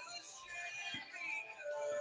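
Quiet background music with a melody, playing under the quiz game's results screen.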